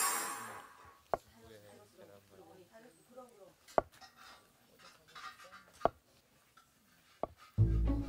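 A kitchen knife cutting down through a block of tofu onto a wooden cutting board: four sharp taps about two seconds apart, one for each slice. Faint background music runs under them, and louder string music starts near the end.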